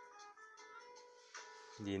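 Background music of gently plucked notes, like a guitar, running at a low level. Near the end a man's voice begins speaking.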